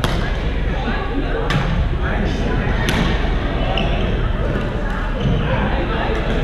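Badminton rackets striking a shuttlecock in a rally, with three sharp smacks: one at the start, one about a second and a half in and one about three seconds in. The hits echo in a large gym hall over a steady hum of voices.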